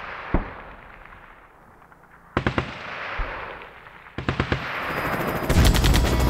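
Three bursts of gunfire, each a quick rattle of shots trailing off into echo, about two seconds apart; after the last burst the sound keeps building louder.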